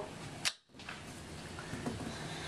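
A kitchen knife knocks once on the countertop as it cuts through a peeled raw potato, about half a second in. A faint tap follows near the end.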